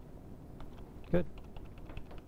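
Scattered light clicks of typing on a computer keyboard, with a brief voice sound about a second in.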